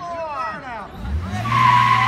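A pickup truck passing close with its engine revving up about a second in, topped by a loud, steady high-pitched squeal in the last half second. Before that, a string of quick falling pitch sweeps like a siren's yelp.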